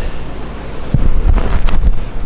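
Wind buffeting the microphone aboard a catamaran underway: a loud, uneven low rumble with a few sharper gusts in the second half.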